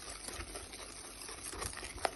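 Faint stirring of flour into a chocolate-and-egg batter in a glass bowl.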